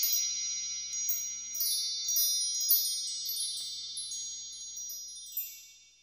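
High, shimmering chime sound effect of an animated intro: many ringing tones stacked together, with quick glittering runs over them, slowly dying away to nothing near the end.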